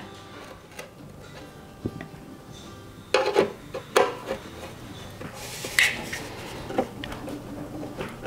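Small metal screw and star washer clinking against the rusty metal heater-box housing and a screwdriver scraping as the screw is started through the blower motor's ground-wire eyelet. There are a few short clinks, the loudest two between three and four seconds in, and a brief scrape about six seconds in, over faint background music.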